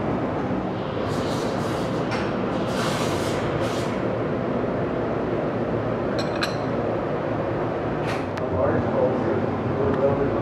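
Café background of indistinct voices. In the first few seconds a knife saws through a flaky almond croissant in several short, crunchy strokes. Later come a few sharp clinks of cutlery or crockery.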